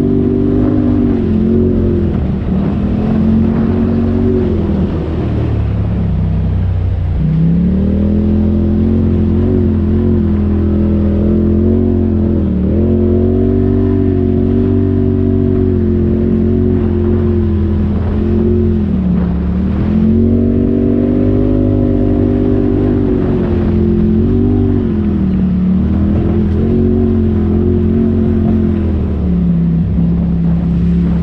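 Polaris RZR side-by-side's engine pulling steadily at mid-to-high revs, heard from the cab. The revs dip briefly about half a dozen times as the throttle is eased off and come back up as it is reapplied.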